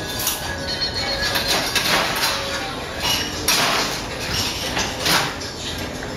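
Metal cocktail shaker tins and glassware clinking and clattering as they are handled on a bar cart, in several short bursts, over background music.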